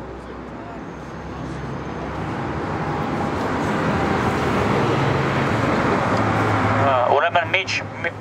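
A road vehicle passing close by in traffic: engine and tyre noise that swells steadily for about six seconds and peaks just before speech resumes.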